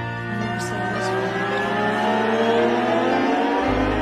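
Live rock music: a lap steel guitar sliding several held notes slowly upward together over about four seconds. The low bass drops out and comes back in near the end.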